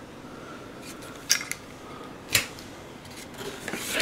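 Handling sounds of a plastic power adapter with its cord and a cardboard box: a few short clicks and rustles near the middle, over a faint steady hiss.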